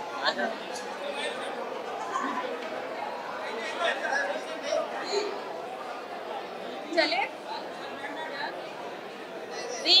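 Crowd chatter: many people talking over one another at once. A louder call rises out of it at about seven seconds, and another near the end.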